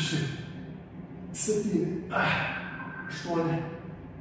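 A man breathing hard from exercise effort: forceful, hissing breaths about once a second, some with a voiced, sigh-like edge.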